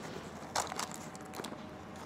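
Faint rustling with a few light clicks and crinkles as items are rummaged through inside a leather handbag.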